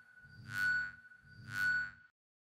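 Closing bars of an electronic deathstep track: a high synth tone over a low bass, swelling and fading about once a second.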